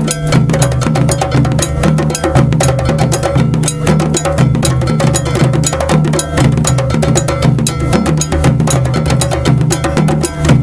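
West African hand-drum ensemble: djembes and rope-tuned dunun bass drums played together in a fast, steady, driving rhythm.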